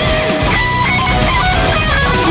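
Ibanez RG1527 seven-string electric guitar played through an Axe-FX II, running a lead solo line of quick notes with slides between pitches, over a heavy metal backing track.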